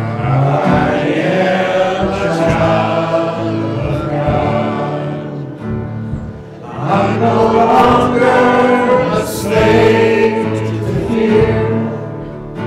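Live worship music: a band with acoustic guitar and keyboard, a man and a woman singing into microphones and the congregation singing along. It eases off briefly around the middle and then swells fuller again.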